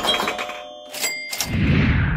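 Edited transition sound effects: a bright chiming sting that stops a little before a second in, two sharp hits with a short ring about a second in, then a deep whoosh whose hiss falls in pitch near the end.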